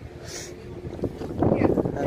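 Wind buffeting the microphone, growing to a louder rush about halfway through.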